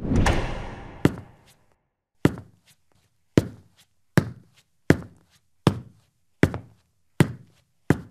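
One loud hit that fades over about a second, then slow, even footsteps of hard-soled shoes on a concrete floor: nine sharp steps, about one every three-quarters of a second, each with a short echo.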